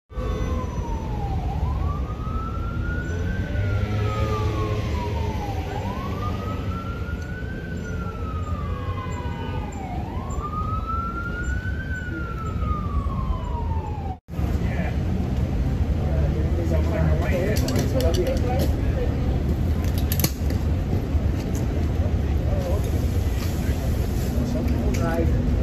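Emergency vehicle siren wailing, slowly rising and falling in pitch about once every four seconds for three cycles. It stops with a sudden cut about halfway through. After that comes a steady low rumble of street traffic with some scattered clatter.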